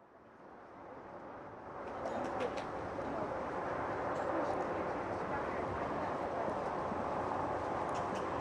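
Outdoor background ambience with indistinct, distant voices, fading in from silence over the first two seconds and then holding steady.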